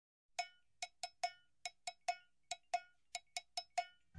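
A run of about thirteen quick, same-pitched percussive taps, each ringing briefly like a struck cowbell, playing an uneven rhythm at the start of the intro music.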